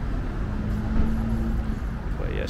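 Low, steady vehicle rumble with no revving, and a faint steady hum partway through.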